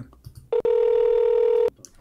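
A single steady electronic telephone tone, held for just over a second and cutting off sharply, as a call to a caller is placed and connected.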